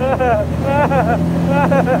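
Motorboat engine running at a steady pitch as the boat moves along the river. Three short, high-pitched voice calls sound over it.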